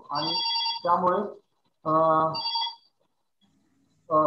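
Telephone ringing: two short bursts of steady, high electronic tones about two seconds apart, over a man's voice.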